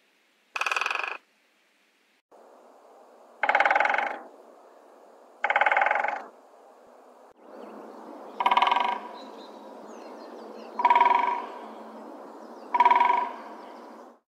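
Great spotted woodpecker drumming: six short, fast rolls of bill strikes on wood, each about half a second long and trailing off at the end, spaced roughly two seconds apart. The drumming is a territorial signal that the territory is occupied.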